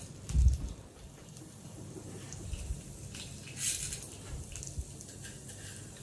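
Handful of urad dal in a hot pan: a low thump about half a second in as it lands, then a faint, steady crackle of the lentils starting to fry, with a brief clatter a little past the middle.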